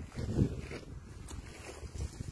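Wind rumbling on a phone microphone outdoors, with a brief faint voice about half a second in.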